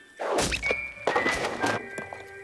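Animated TV channel ident sound design: two quick whooshing swishes, the first ending in a low thud, over a few ringing chime notes of a jingle.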